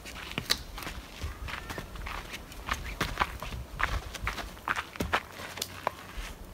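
Footsteps on a dirt forest trail with twigs and debris: a run of irregular, sharp steps.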